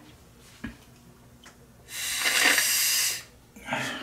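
One hard blow of breath, a little over a second long, through a coffee maker's rubber water hose to clear calcium scale clogging the line. A couple of faint clicks come before it.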